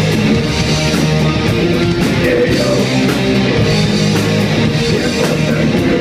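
Live metal band playing loud and steady: electric guitar over a drum kit, with cymbal strikes coming through again and again.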